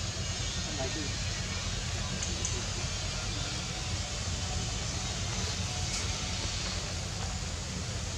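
Steady outdoor forest noise with a low rumble like wind on the microphone, unchanging throughout.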